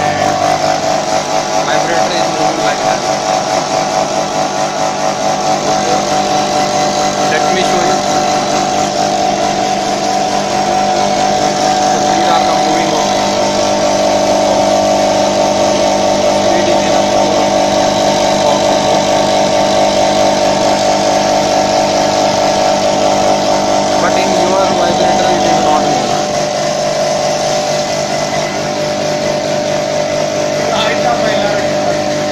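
Electromagnetic vibratory bowl feeder running under its old vibrator controller, giving a loud, steady buzz that eases slightly near the end.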